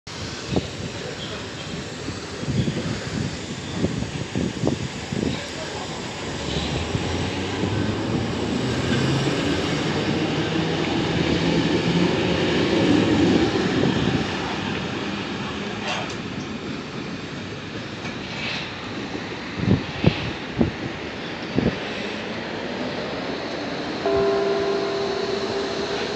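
A Hamburg U-Bahn DT1 train pulls out past the platform. Its wheels click over the rail joints and its traction motors whine, rising in steps as it speeds up, loudest as it passes, then fading away. Near the end a short steady electronic chime sounds from the station's announcement system.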